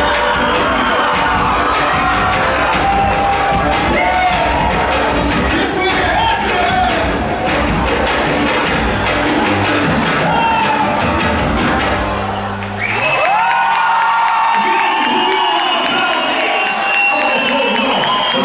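Live band with drum kit and hand percussion playing loudly, with a lead vocal and an audience cheering and singing along. About twelve seconds in, the drums and bass drop out, leaving voices singing over the crowd.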